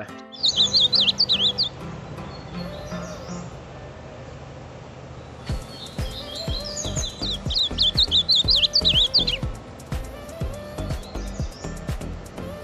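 A songbird singing in two quick, warbling bursts of high zigzagging notes, the first right at the start and a longer one from about six to nine seconds in. Background music with a steady beat plays under it.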